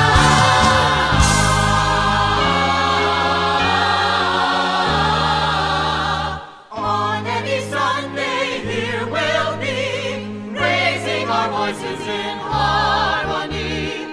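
Choir singing held chords over accompaniment in a gospel-like style. The music drops out briefly about six and a half seconds in, then the singing resumes with a noticeable vibrato.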